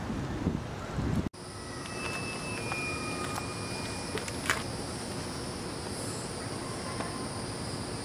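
Steady outdoor background hiss that cuts abruptly about a second in and resumes. A couple of light clicks follow, around three and four and a half seconds in, as a person climbs into a car's driver's seat with the door open.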